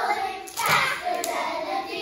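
A group of young children singing together in unison, with two sharp hand claps, the first about half a second in and a lighter one a little over a second in.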